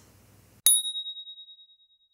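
A single bright bell ding, struck once about two-thirds of a second in and ringing out over about a second and a half: an edited-in chime sound effect marking the cut to the next section's title card.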